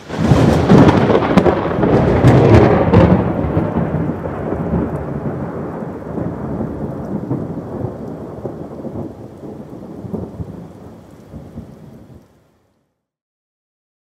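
A thunder-like rumble that starts suddenly with sharp cracks over its first three seconds, then dies away slowly and cuts off shortly before the end.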